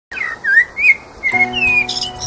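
Bird chirps in short up-and-down glides, with a held music chord coming in just over a second in and more chirps over it.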